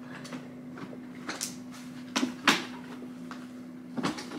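A few short clicks and knocks from an Evenflo Pivot stroller being handled, its parts and latches being worked by hand; the loudest knock comes about two and a half seconds in.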